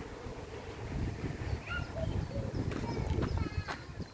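Wind buffeting a phone's microphone as an uneven low rumble, with a few short, faint high chirps and some light clicks in the second half.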